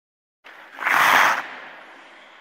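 Whoosh-and-burst sound effect for a logo reveal: a noisy rush that swells to a loud peak about a second in, then fades away slowly.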